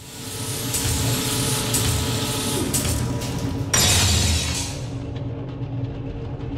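Cinematic transition sound design: a droning hum with steady low tones that swells in over the first second, and a bright whoosh about four seconds in that fades away.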